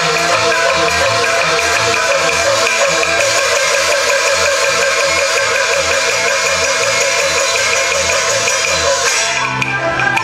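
Yue opera accompaniment ensemble playing a fast instrumental passage: a busy, quickly moving melody over a regular low drum beat. The texture thins out near the end.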